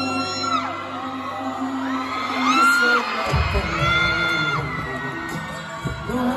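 Live music in a concert hall: a male singer holding long, sliding notes over a soft accompaniment that shifts about three seconds in. High held voices from the audience may mix in.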